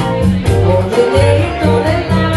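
Live band music: a woman sings a melody into a microphone over electric guitar, keyboard and low bass notes.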